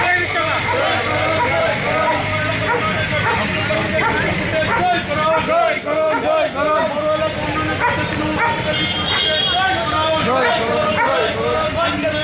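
Crowd of marchers shouting, many voices overlapping at once, over street noise.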